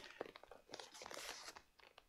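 Near silence with faint rustling and a few small clicks as a quilted lambskin leather clutch is shifted in the hands.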